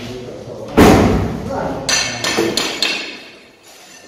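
A wooden window being opened in a bare, echoing room: a loud bang about a second in, then a few sharp clicks and rattles from the frame and its latch.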